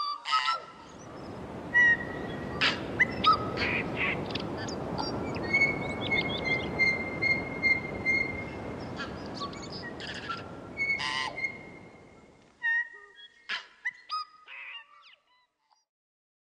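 Birds chirping and calling, with many short tweets and a long, steady, slightly pulsing note, over an even rushing background noise that fades out about twelve seconds in, leaving only scattered chirps.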